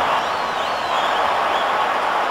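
Steady din of a large stadium crowd, many voices blended into an even roar.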